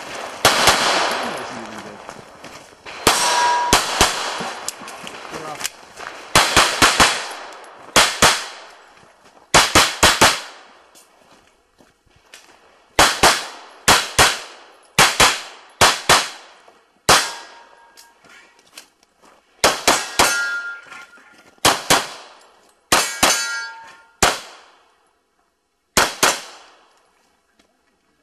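Rapid pistol fire, mostly quick pairs and short strings with pauses between, mixed with the clang of steel targets being hit, some of them ringing on briefly. The shooting stops about two seconds before the end.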